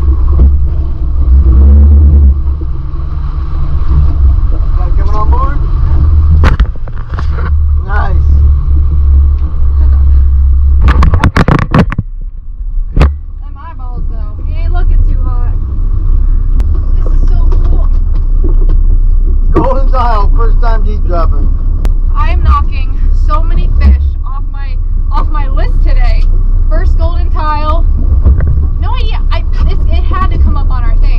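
Steady low rumble of a fishing boat's outboard engines, with a quick run of knocks and thuds about eleven seconds in. Voices talk over it through the second half.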